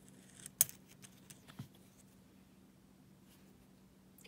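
Nickels clicking against each other as fingers pick a coin out of a laid-out roll on a cloth mat: a few light metallic clicks in the first second and a half, the loudest about half a second in.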